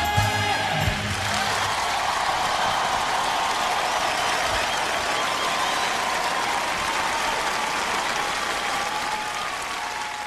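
A band's final chord cuts off about a second in, and a large theatre audience applauds steadily.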